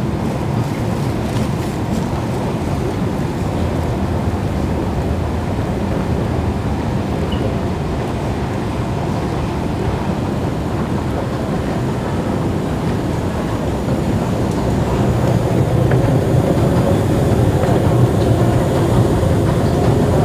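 Steady low rumble of an underground MRT station concourse, growing louder over the last few seconds.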